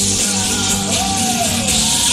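A live pop-rock band playing: strummed acoustic-electric guitar and electric bass, with a sung melody line over the band.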